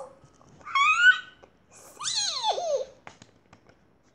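High-pitched, playful vocal squeals: a short one rising in pitch about a second in, then a longer one sliding down, followed by a few faint clicks.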